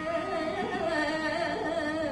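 A woman singing solo into a microphone in Carnatic style: one continuous phrase of long held notes that waver and slide in pitch.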